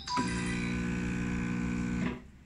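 SMEG espresso machine's pump running with a steady buzz for about two seconds, starting just after a button press and cutting off suddenly.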